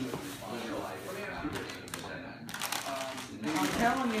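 Indistinct talking in a small room, with a few brief rustling or handling noises in the middle.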